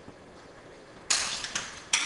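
An Allen key working the screws on a metal platen: two sudden metallic scraping clatters, about a second in and again near the end.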